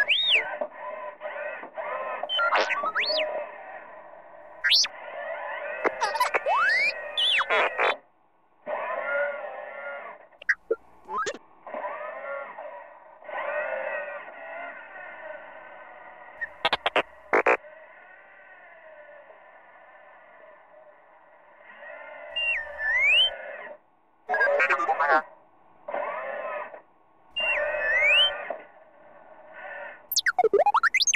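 Synthesized electronic sounds: warbling chirps and sharp rising whistles in stretches that break off and start again, with short pauses about eight seconds in and near twenty-four seconds.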